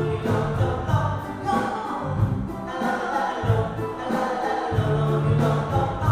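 Live band playing: male voices singing together over guitar, drum kit and keyboard, with bass notes and a steady drum beat.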